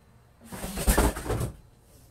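A small fan knocked off the toilet, clattering and tumbling into the shower for about a second, starting about half a second in, with several hard knocks.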